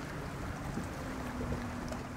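Steady low rumbling noise of wind and water around a small boat, with a faint steady hum in the second half.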